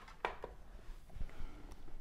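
A small plastic desk fan being picked up and carried by hand: a couple of light knocks near the start, then fainter clicks and handling rustle.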